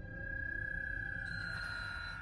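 A steady high-pitched electronic tone, held with a slight waver, joined about halfway through by a fainter, higher tone: a sound-effect sting in the anime's soundtrack, leading into the Stand's tarot-card title.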